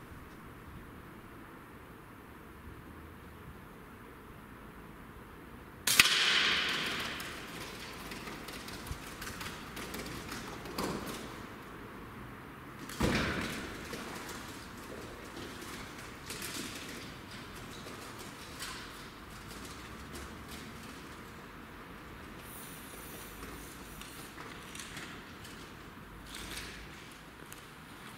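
An Air Arms S510 .177 PCP air rifle firing a single shot about six seconds in, the loudest sound, after a stretch of quiet room tone. Scattered knocks and rustles follow, with a second, weaker sharp knock about seven seconds after the shot.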